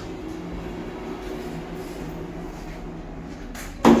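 An Evans lift's automatic sliding doors closing over a steady low hum, shutting with a sudden loud thud near the end.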